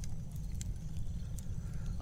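Wood fire burning, with a few faint sharp crackles over a steady low rumble.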